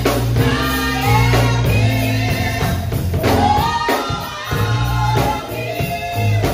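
Live gospel praise-and-worship music: three singers sing together into microphones over electric bass, keyboard and drum kit. The bass holds long low notes, with a few drum hits.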